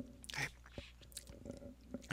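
A brief pause in a man's speech: a short breath about half a second in, then a few faint mouth clicks, over a steady low electrical hum.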